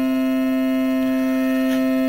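A steady drone of several held pitches that does not change, the sustained accompaniment that sounds beneath the Sanskrit chanting.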